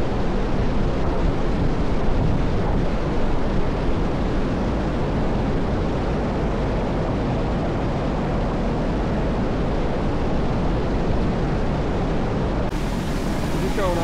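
Water rushing steadily over a low stone dam spillway, a dense, even white-water rush.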